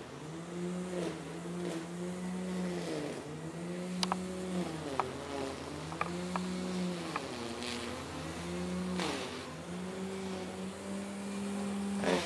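Honeybees flying around an open hive close to the microphone, their overlapping buzz rising and falling in pitch as individual bees pass, with a few light clicks from the wooden frames being handled.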